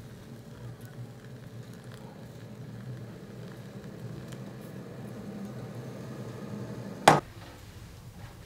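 Water pouring in a steady stream into a pot on a stove, a low steady filling sound. About seven seconds in comes a single sharp knock.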